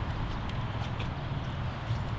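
Handheld camera being swung down and moved outdoors: a steady low rumble and hiss with a few faint clicks of handling.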